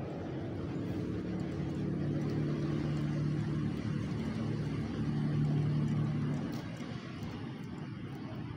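A motor vehicle's engine humming steadily, growing louder and then fading away about six and a half seconds in.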